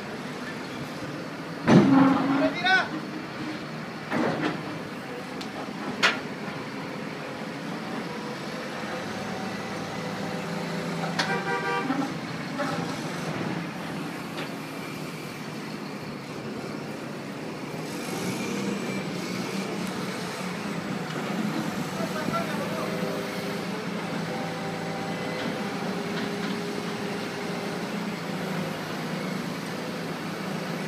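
Heavy machinery running with a steady drone that grows louder about eighteen seconds in. A few short shouts come in the first few seconds, and a brief horn-like toot about eleven seconds in.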